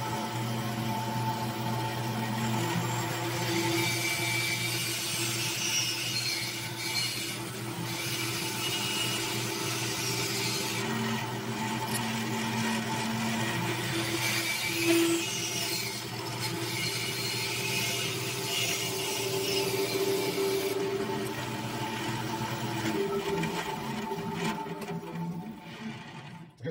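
Bandsaw running steadily while its blade cuts the outline of a chess knight from a maple block. The cutting noise rises and falls as the piece is turned through the curves, and eases off a few seconds before the end.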